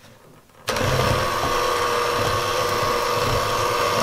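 Electric hand mixer switching on suddenly under a second in, then running at a steady pitch with a constant whine as its beaters whisk batter in a glass bowl.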